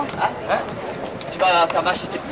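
Hooves of thoroughbreds walking on a dirt track: scattered clip-clop steps. People's voices talk over them, loudest about one and a half seconds in.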